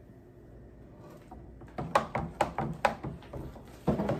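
A kitchen utensil knocking and clicking in a plastic pitcher of agua de jamaica: several short, sharp knocks close together about two seconds in.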